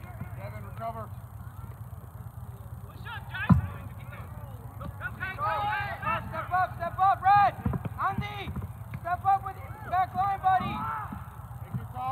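Players and spectators shouting during a soccer match: a string of short, raised calls from about five seconds in, with one sharp knock about three and a half seconds in.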